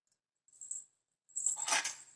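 Small metal pieces jingling and clinking: a faint jingle about half a second in, then a louder rattle of clinks near the end.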